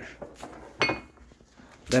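A single sharp metallic clink with a brief high ring, about a second in, from the stainless steel filter holder or filter basket of an espresso machine knocking as it is handled.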